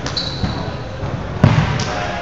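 A volleyball bounced once on the gym's hardwood floor, a strong echoing thud about one and a half seconds in with a fainter knock just after, over a steady background of voices in the hall. A brief high tone sounds near the start.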